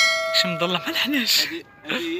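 Bell chime sound effect of a subscribe-button animation: a bright ringing tone sounds at the start and dies away over about a second and a half.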